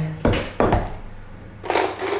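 Two quick knocks of a hard object, about a third of a second apart, then a short rustle near the end.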